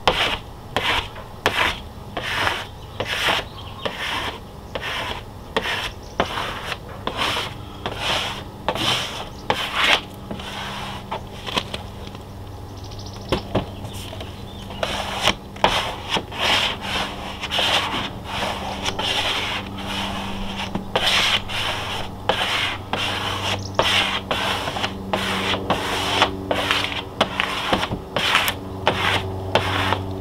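Plastic squeegee rubbed in quick repeated strokes over a wet vinyl decal on a trailer's side wall, about two strokes a second, with a pause of a few seconds midway. The squeegee is pressing the soapy application water out from under the vinyl.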